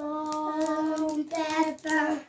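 Children chanting the stone-paper-scissors call in a sing-song voice: one long held note, then two shorter ones, as hands are thrown.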